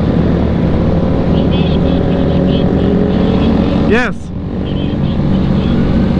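Motorcycle engine running at a steady speed while riding on the highway, with wind rush on the helmet-mounted microphone.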